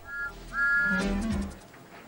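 A steam-engine whistle sound effect gives two peeps: a brief one, then a longer one. Each is a high two-note chord. A low tone sounds under the end of the second peep.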